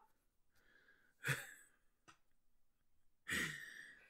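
A person's breath: a short sigh-like exhale about a second in and another near the end, with a faint click between.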